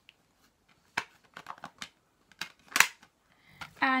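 Blue plastic Blu-ray case being handled and opened: a series of sharp plastic clicks and knocks, the loudest about three seconds in.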